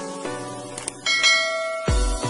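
A subscribe-animation sound effect over light background music: two quick clicks, then a bright bell chime about a second in that rings on and fades. A dance beat with a heavy kick drum comes in at the very end.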